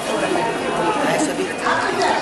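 Indistinct chatter of several women talking over one another.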